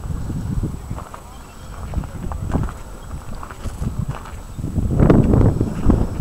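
Footsteps of someone walking on an outdoor path, irregular knocks over a low rumble of wind on the microphone, getting louder about five seconds in.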